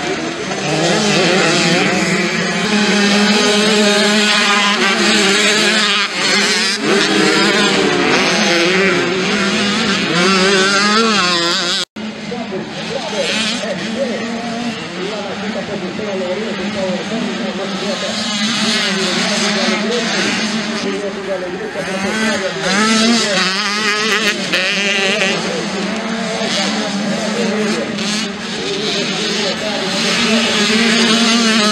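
Several 85cc two-stroke dirt bikes racing, their engines revving up and down constantly as the riders work the throttle through the corners and straights. The sound drops out for an instant about twelve seconds in, and after that the bikes sound further off.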